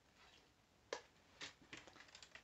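Faint handling sounds of a manual portable typewriter being lifted and moved: a sharp click about a second in, then a few small clicks and rattles near the end.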